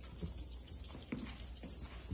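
Kittens pouncing about on a hardwood floor after a feather wand toy: a few soft paw thumps and patters, over a steady high jingling.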